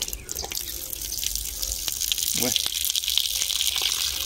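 A steady high hiss, like running water, that grows louder about halfway through, with a few light clicks.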